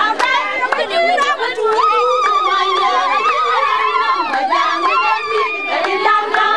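A crowd of women talking and shouting all at once. About two seconds in, one voice holds a long, high, wavering cry for about two seconds above the chatter.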